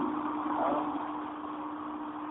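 Faint background noise with a steady low hum in a pause between spoken sentences.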